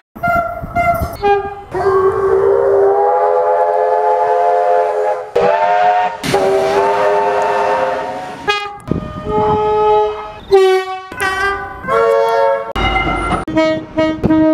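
Train air horns of several types, including a Zollner Makrofon two-tone and a five-chime horn, spliced one after another. Short chord blasts alternate with two long multi-note soundings in the first half that bend up into pitch as they start, and each clip cuts off abruptly.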